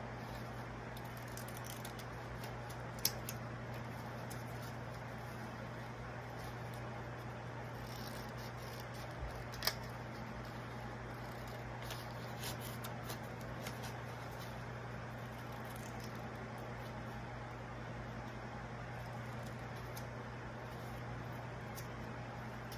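Scissors cutting construction paper: faint snips and paper rustling with small scattered clicks, two of them sharper about three and ten seconds in, over a steady low hum.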